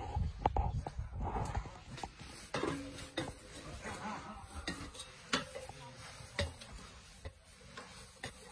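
Handling noise from a phone microphone as the phone is swung about and carried: scattered light clicks and knocks over a low rumble, busiest in the first second or so, then sparser.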